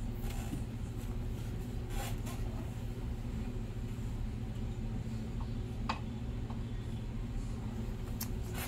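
Room tone: a steady low hum with a few faint clicks, about two seconds in and again near six seconds.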